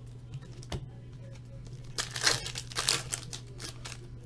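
Trading cards and a foil pack wrapper being handled and sorted by hand: a single click about a second in, then a burst of crinkling and rustling a little after halfway. A steady low hum runs underneath.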